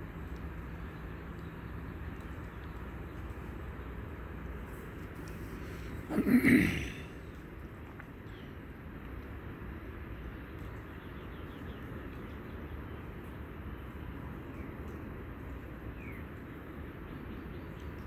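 A man clears his throat once, about six seconds in. Around it is a steady low background hum with a few faint chirps.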